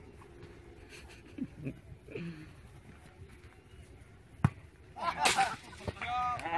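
Faint distant voices of people playing in an open field, then a single sharp knock about four and a half seconds in, followed by a loud voice calling out close by near the end.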